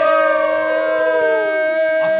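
Several young men's voices holding one long sung note together, drawn out from a sing-song 'thank you' chant, while one voice slides slowly downward in pitch.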